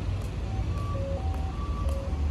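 A steady low rumble of outdoor street noise under a simple melody of single held notes.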